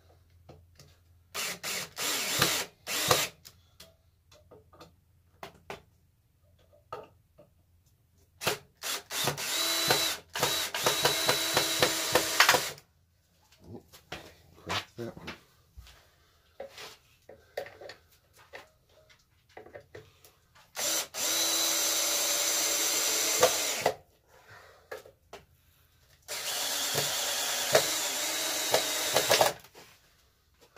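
Cordless drill driving deck screws into the wooden legs of a hive stand. It starts with a few short bursts, then makes three longer steady runs of about three seconds each, with small knocks of handling the wood in between.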